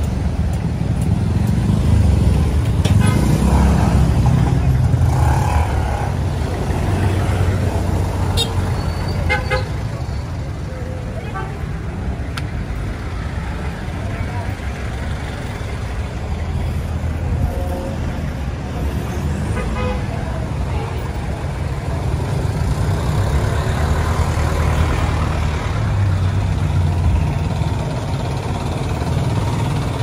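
Street traffic: engines of jeepneys, motorcycles and tricycles running close by in a steady low rumble, with a short horn toot a little under ten seconds in and voices among it.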